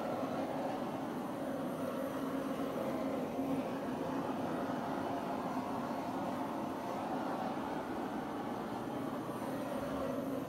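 Handheld butane torch burning with its blue flame turned up, a steady rushing hiss as it is passed over a wet acrylic pour.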